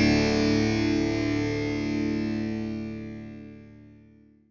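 The closing chord of a rock song on distorted electric guitar, held and dying away steadily over a few seconds.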